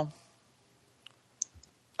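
A pause that is mostly near silence, broken by a few small, short clicks about a second to a second and a half in.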